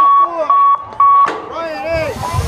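BMX starting gate's electronic start cadence: short, even beeps every half second, three of them here, and just after the last one the gate drops with a sharp clang. Voices carry on underneath.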